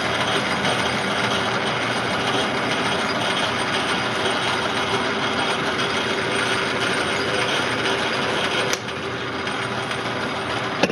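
Metal lathe taking a facing cut across a large disc with a carbide-insert tool: a steady cutting hiss over the running machine's gear noise. A sharp click comes near the end, after which the noise is a little quieter.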